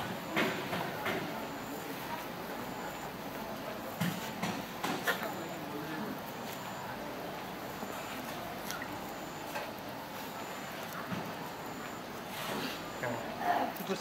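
Dry ornamental grass leaves rustling in brief spurts as they are gathered and braided by hand, over a quiet outdoor background with a faint high chirp repeating about every three-quarters of a second.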